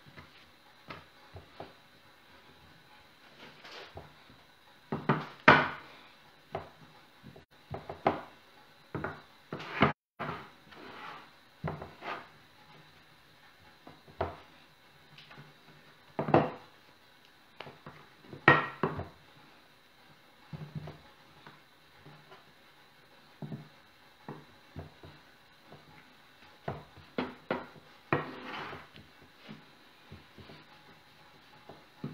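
Wooden rolling pin rolling out bread dough on a wooden board: irregular wooden knocks and thuds as the pin is pressed, rolled and set down. The loudest knocks come about five seconds in and again a little past the middle.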